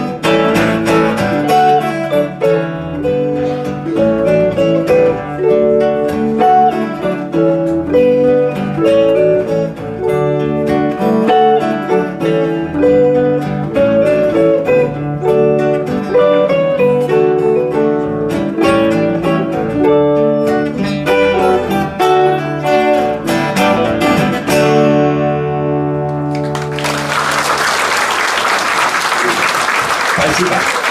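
Instrumental guitar trio, an archtop electric guitar with two acoustic guitars, playing the closing passage of a song with quick picked notes over strummed chords, then ringing out on a final held chord. In the last few seconds the audience bursts into applause.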